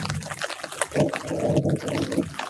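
Light rain falling on citrus leaves, with water dripping and trickling; it grows louder and denser in the second half.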